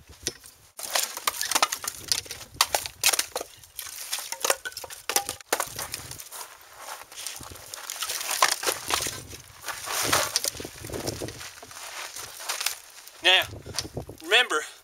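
Split firewood logs being pulled off a woodpile and tossed aside: a run of irregular wooden knocks, clunks and scrapes. A brief voice comes in near the end.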